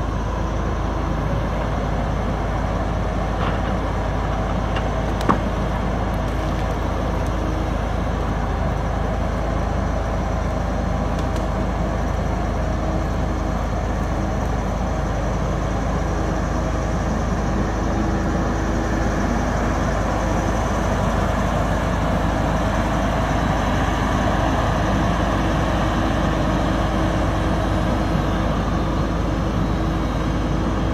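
Diesel engine of a John Deere knuckleboom log loader running steadily under load as it swings and handles pine logs. A single sharp knock about five seconds in.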